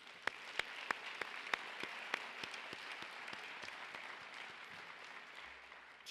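Audience applauding, with one person's louder, sharper claps standing out at about three a second. The applause dies away near the end.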